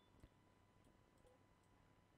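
Near silence: low room tone with a few faint computer-mouse clicks, the clearest about a quarter second in.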